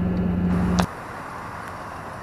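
Steady engine and road drone inside the cab of a Duramax LB7 6.6-litre V8 turbodiesel pickup on the move. It cuts off suddenly a little under a second in, giving way to quieter, even outdoor background noise.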